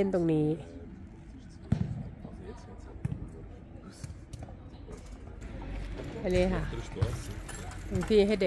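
A few scattered knocks or thuds over a quiet background, the clearest about two seconds in and another about three seconds in, with brief speech at the start and again near the end.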